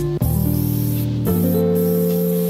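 Aerosol spray paint can hissing in bursts as paint is sprayed onto a wall, over background music with held chords.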